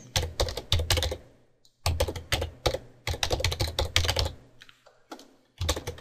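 Typing on a computer keyboard: quick runs of keystrokes, broken by short pauses a little over a second in and again near the end.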